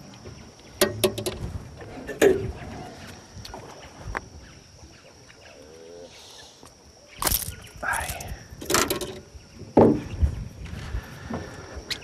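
A hooked aruanã (silver arowana) thrashing and splashing at the water's surface beside the boat as it is landed, in several short, sharp bursts with quieter gaps between.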